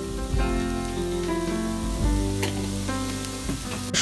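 Chopped onions and whole spices frying in oil in a steel pan, sizzling steadily, with background music playing over it.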